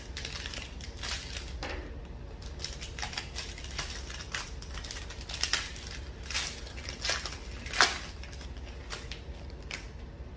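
Foil wrappers of Panini Prizm basketball card packs crinkling and crackling as the packs are handled and one is torn open, in irregular sharp rustles and clicks. The loudest crackle comes about three-quarters of the way through.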